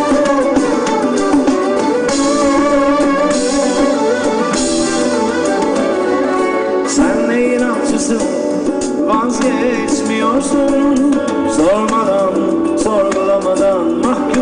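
Live rock band playing loudly through a festival PA, with electric and bass guitars over a drum kit.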